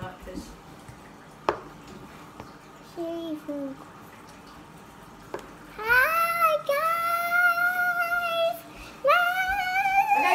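A young girl singing long, high held notes: one from about six seconds in lasting nearly three seconds, another starting near the end. Before that there is a short laugh and a couple of sharp clicks.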